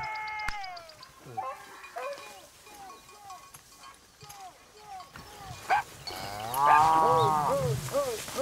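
A cow mooing once, long and loud, near the end, over a string of short, repeated higher animal calls.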